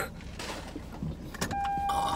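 Car cabin sound: a steady low hum with a couple of clicks, and about halfway in a steady, even-pitched tone that holds on.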